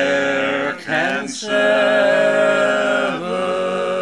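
Barbershop quartet of men singing a cappella in four-part harmony, holding close chords, with a brief break for breath a little over a second in.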